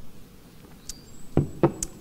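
Two sharp knocks about a quarter second apart in the second half, with a few fainter clicks around them, over a low steady hiss.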